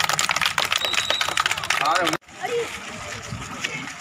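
Crowd of people talking over one another at an outdoor gathering, with many sharp clicks among the voices; the sound cuts off abruptly about two seconds in and comes back as quieter, scattered voices.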